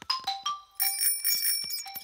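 A few short musical notes, then a small bicycle bell rung about a second in, its bright tone ringing on, over light ticking clicks.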